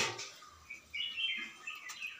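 Faint, high-pitched chirping, like a small bird, in short notes from about half a second in until near the end.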